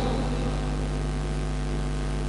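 Steady low electrical mains hum from a public-address sound system.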